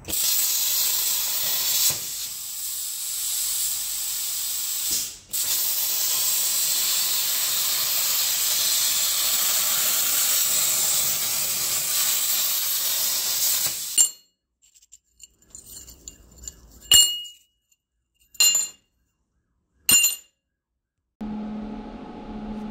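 CNC plasma cutter torch cutting metal plate: a loud, steady hiss that drops out briefly about five seconds in, then runs on until it stops about fourteen seconds in. Three short, sharp clinks follow.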